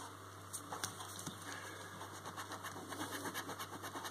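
A coin scratching the silver latex coating off a paper scratchcard in quick, repeated strokes, faint and steady.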